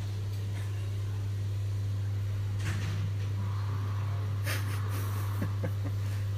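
A steady low hum that does not change, with a few brief breathy hisses over it.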